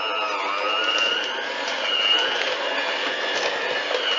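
Electric hand mixer running steadily as its beaters work butter, sugar, flour and ground almonds into a crumbly cookie dough. The motor whine wavers slightly in pitch as the load on the beaters changes.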